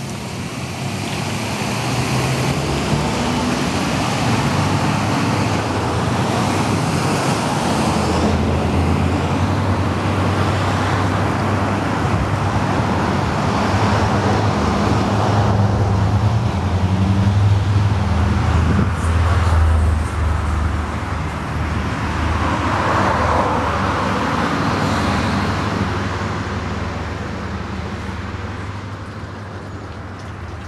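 Road traffic noise with a vehicle engine's low hum. It builds over the first couple of seconds, is loudest through the middle and eases near the end.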